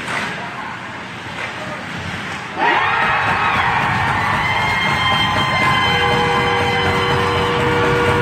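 Ice rink crowd noise, then about two and a half seconds in a loud arena goal horn starts suddenly and holds a steady chord of several tones over crowd cheering, marking a goal.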